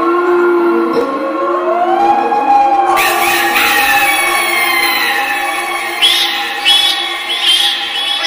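Electronically processed, eerie-sounding audio: several layered, echoing tones gliding in pitch like a wail, rising over the first couple of seconds. About three seconds in it turns brighter, and from about six seconds in short bright bursts repeat a little faster than one a second.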